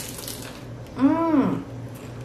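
A bite into a crisp, deep-fried corn-tortilla taquito: a short crunch at the start, then about a second in a hummed "mmm" of enjoyment, its pitch rising and falling.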